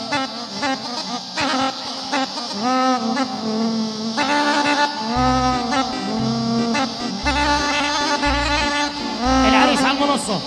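Live Palestinian dabke music: a brass-like lead melody with sliding notes, joined about halfway through by heavy, regular drum beats.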